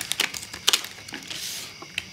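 Plastic blister pack of toy cap-gun disc caps being pulled open by hand: the plastic crackles with several sharp clicks, then a short rustling hiss as the backing card peels away, and one more click near the end.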